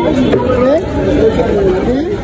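People talking: close-up conversation, likely haggling over onions at a market stall.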